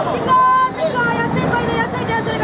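A person speaking in a loud, raised voice, with street traffic in the background.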